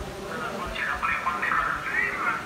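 Indistinct voices of people talking, no words clear.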